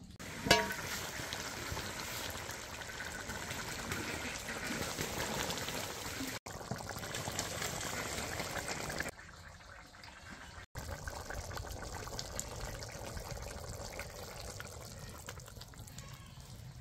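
Shrimp and vegetable curry boiling in an iron karai over a wood-ember fire: a steady bubbling hiss, softer for a moment about nine seconds in. A sharp click about half a second in.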